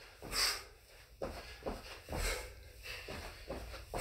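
Feet thudding softly on a carpeted floor as two people do repeated jump squats: pogo hops, then a hop out wide into a squat. Two sharp exhales are heard among the landings.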